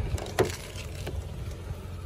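Car door latch released by pulling the outside handle: one sharp click a little under half a second in, then a few fainter clicks as the door swings open.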